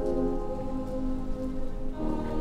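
A choir singing a soft, sustained chord, the voices held steady over a low background rumble.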